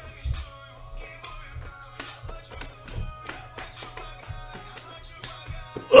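Pop music with a steady beat and low bass thumps playing in a room. Right at the end a man lets out one loud shout, "ugh!".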